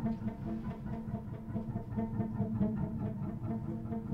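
Experimental improvised film-score music for cello, guitar, saxophone and electronics: a steady low drone held under quick, flickering repeated notes.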